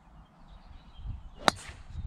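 A golf club striking a golf ball in a full swing: one sharp click about one and a half seconds in.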